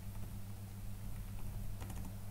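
A few faint computer keyboard keystrokes, the clearest near the end, as spaces are typed into a text editor. A steady low hum runs underneath.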